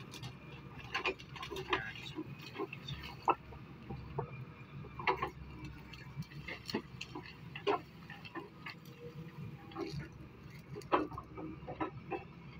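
Excavator's diesel engine running with a steady low hum while the bucket works a rock face. Irregular sharp knocks and clatter of rock and falling stones come throughout.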